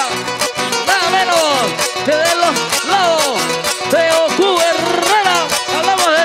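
Live Panamanian folk music, a picao: two acoustic guitars playing a quick strummed accompaniment, with a wordless melody sliding up and down over them.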